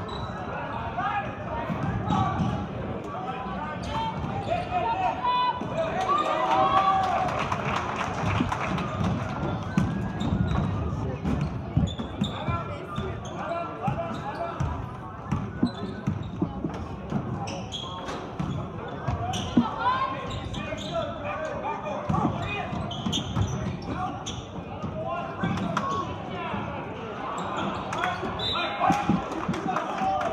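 A basketball being dribbled on a hardwood gym floor during play, repeated bounces echoing in the gym, under a steady background of crowd and player voices.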